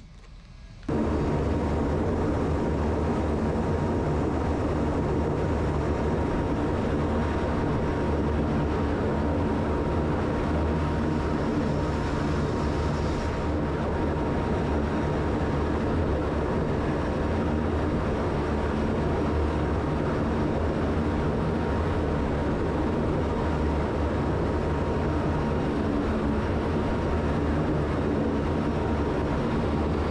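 C-130J Super Hercules turboprop engines running steadily at close range: a loud, constant drone with a thin steady whine. It starts abruptly about a second in.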